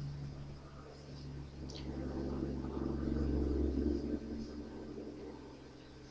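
Low rubbing and rumbling handling noise from hands working close to the microphone. It swells about two seconds in, peaks a little before four seconds and fades, with one sharp click shortly before the swell.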